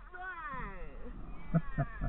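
A woman laughing: a high squeal of laughter that falls in pitch, then three short ha-ha bursts near the end.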